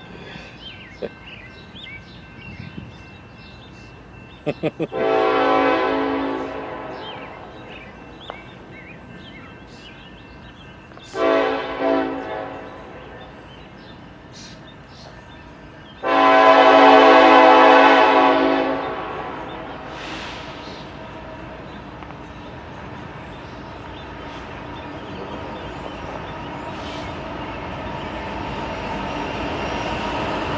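Locomotive air horn of an approaching BNSF train sounding three blasts: a long one about five seconds in, a short one at about eleven seconds, and a longer one at about sixteen seconds. After the last blast the train's rumble builds steadily as it nears.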